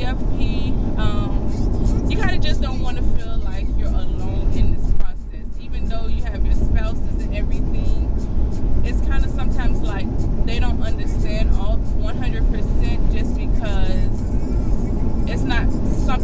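Mostly a woman talking inside a moving car, over a steady low rumble of road and engine noise in the cabin. The rumble dips briefly about five seconds in.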